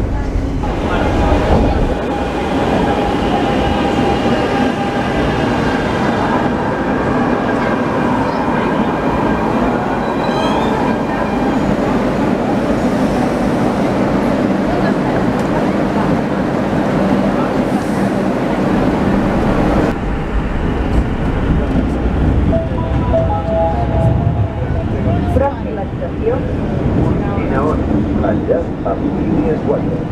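Metro trains heard from inside and beside the cars. There is a continuous rumble of wheels on rails, with a steady high electric whine during the first half while the train is under way. In the later part, passengers' voices mix with the rumble on a platform and in a crowded carriage.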